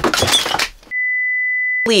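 A brief noisy burst, then a single steady electronic beep tone lasting about a second against dead silence: an edited-in bleep sound effect.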